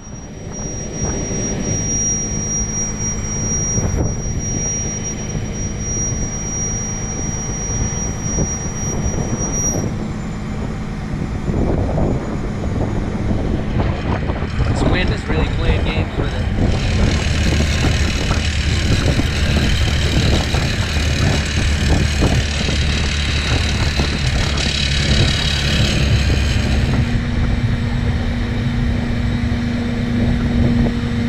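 Wind buffeting the microphone over a heavy engine running steadily, its pitch stepping up near the end.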